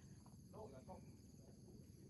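Near silence with faint, steady insect chirring. Faint distant voices come through briefly about half a second in.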